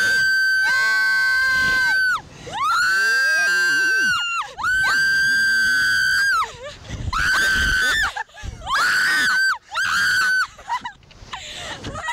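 Two young women screaming on a slingshot reverse-bungee thrill ride: a series of about six long, high-pitched screams, each held up to two seconds, the later ones shorter. They are screams of thrill and delight rather than fear.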